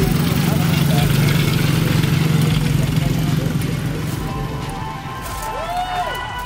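Small youth-size ATV engines running steadily, fading out about four and a half seconds in, under a hubbub of crowd voices.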